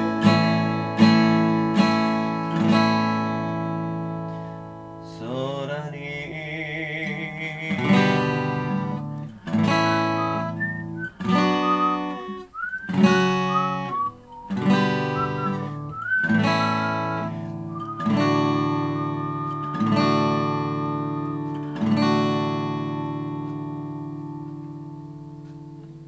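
Steel-string acoustic guitar strummed in chords, about one a second, each left to ring. A held vocal note with vibrato comes in briefly a few seconds in. Near the end the last chord is left to ring out and fade.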